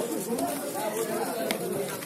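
Overlapping chatter of several people talking at once, with no single voice standing out.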